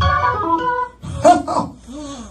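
Organ chords held under a woman's voice amplified through a microphone. About a second in she cries out in short calls that rise and fall in pitch.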